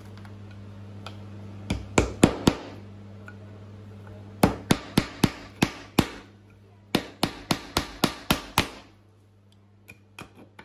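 Claw hammer driving a nail into a pine board, in three runs of quick metal-on-metal strikes at about four a second.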